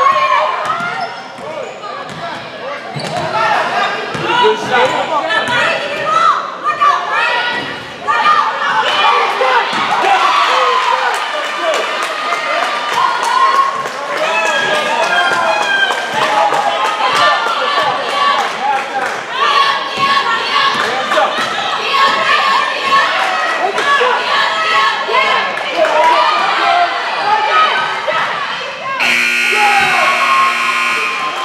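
A basketball dribbled and bouncing on a hardwood gym floor, with players and spectators shouting in the echoing gym. Near the end a scoreboard buzzer starts, a loud steady tone.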